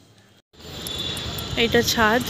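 A brief break in the sound, then open-air background noise with a thin steady high-pitched whine. A voice comes in about a second and a half in.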